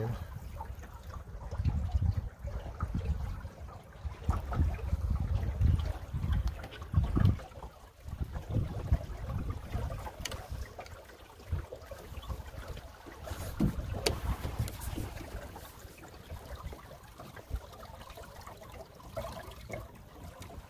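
Water gurgling and lapping along the hull of a small open sailboat, a Drascombe Lugger, running downwind, with uneven low rumbles and a few faint knocks.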